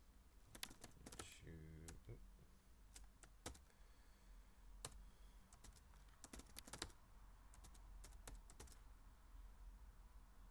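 Computer keyboard keys clicking in faint, irregular taps as a short line of text is typed.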